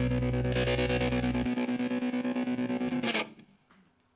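Distorted electric guitar chord held and ringing out as the last chord of a rock song. The bass drops out about one and a half seconds in, and the chord cuts off with a short noisy burst about three seconds in.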